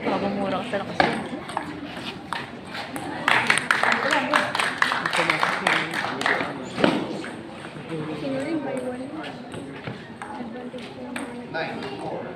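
Table tennis ball clicking off paddles and the table in a rally, sharp ticks coming thickest a few seconds in, over background chatter of onlookers.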